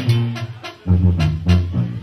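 Mexican banda brass band playing live, with brass and a strong bass line. The band drops out briefly about half a second in, then comes back in full.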